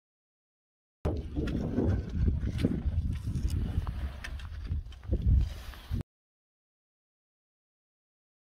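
Footsteps and trekking-pole clicks on loose rocky scree, with wind rumbling on the microphone. The sound starts about a second in and cuts off abruptly about five seconds later.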